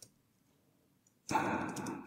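Mostly near silence in a small room, with a faint keyboard tap, then from about a second and a half in a short soft breath with a few faint computer-keyboard clicks.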